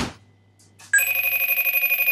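Incoming FaceTime call ringtone on an Apple device, starting about a second in: a loud, steady ring of several stacked high tones.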